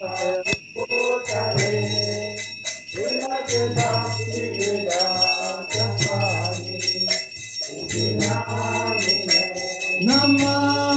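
Devotional chanting (kirtan) over a steady droning accompaniment, with a small hand bell ringing continuously through it, as during a temple arati offering.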